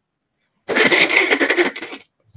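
A person's voice in a loud, breathy outburst lasting just over a second, starting after a short silence.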